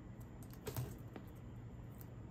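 Faint taps, light clicks and rubbing of fingertips and long fingernails pressing blue painter's tape down onto a canvas panel, with a low steady hum underneath.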